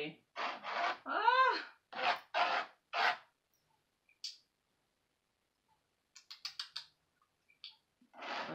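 A woman's wordless vocal sounds for the first three seconds, then a paintbrush scrubbing acrylic paint on canvas: a quick run of about six short strokes around six seconds in, and one more near the end.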